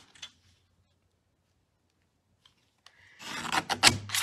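Small paper trimmer's blade drawn along its track, slicing through cardstock: one short rasping cut about three seconds in.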